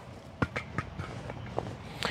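Handling noise: a few light clicks and rustling as paracord and camping gear are worked at the belt. The sharpest click comes about half a second in.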